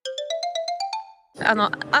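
A short electronic jingle: a quick run of short notes climbing in pitch for about a second, then fading out. A man starts speaking about a second and a half in.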